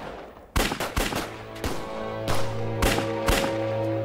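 A string of about six gunshots fired at irregular intervals, some two a second, in a film gunfight, over a dramatic score that settles into a sustained low note about halfway through.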